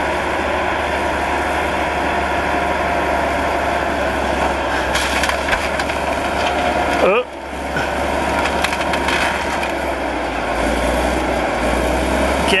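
Caterpillar D8 crawler dozer's diesel engine running hard as the blade drives into an old Chevy pickup, with metal crunching and banging of the impact about five to seven seconds in. The engine note falls and the noise briefly dips just after the hit, then builds again as the dozer pushes on the truck.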